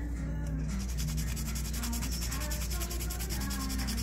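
Sandpaper rubbing over a hardened epoxy-putty figure head in quick, even strokes, smoothing its surface, starting about a second in. Background music plays underneath.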